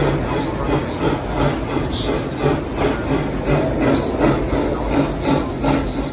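Steam-style park railroad locomotive and its passenger cars passing close, a steady rumble and hiss with a regular beat about twice a second.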